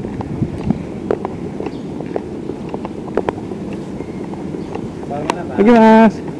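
Motorbike rolling slowly up a paved driveway: a steady low rumble of engine, road and wind noise with scattered small knocks. Near the end, a man's voice calls out briefly.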